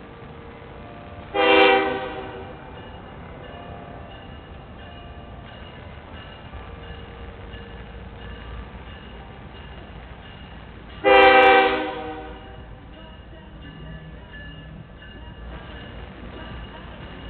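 Diesel locomotive air horn, Canadian Pacific GE ES44AC, sounding two blasts about ten seconds apart, each about a second long and trailing off with an echo. Between the blasts is a low rumble from the approaching train that grows louder from about the middle.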